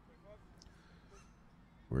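Quiet background with a low hum and faint, distant voices. A man starts speaking loudly near the end.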